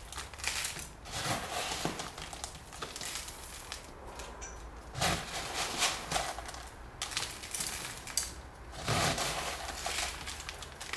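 Horticultural grit being scooped by hand from a small tub and scattered onto the potting soil around the base of a potted cutting: irregular gritty rustling in separate handfuls, loudest about five seconds in and again near the end.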